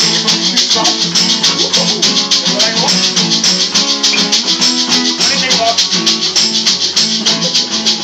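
Small live band playing an instrumental passage: strummed acoustic guitars and a hollow-body bass guitar, with a shaker keeping a steady, quick rhythm on top.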